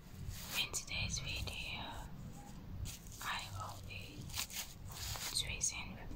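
A person whispering in short phrases, with pauses between them.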